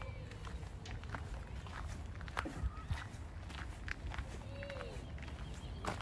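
Footsteps of a person walking at an easy pace, a steady series of short crunches over a low wind rumble on the microphone. A few short, faint, curved calls, voices or birds, sound in the background.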